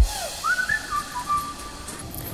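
A short whistled phrase: a note swoops up, holds, then steps down to lower held notes, over a light background.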